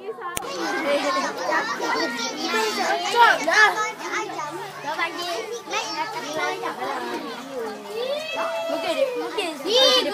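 Many children shouting and calling out at once, their voices overlapping throughout.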